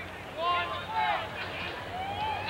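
Speech: a few words from a voice in two short phrases, over a steady low background hum.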